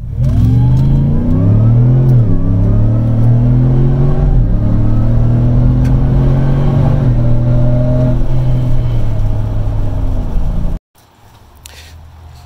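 Callaway-supercharged V8 in a GMC Yukon Denali accelerating hard through its 10-speed automatic, heard from inside the cabin. Its pitch climbs, then drops at upshifts about two and four and a half seconds in, before holding fairly steady at high revs. The engine sound cuts off abruptly near the end.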